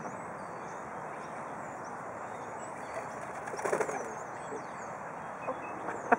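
Small birds chirp faintly at a distance over a steady outdoor hiss. A brief, louder flurry of close sound comes about three and a half seconds in.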